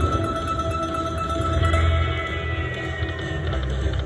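Buffalo video slot machine playing its free-games bonus music as the reels spin: steady held tones over a low bass.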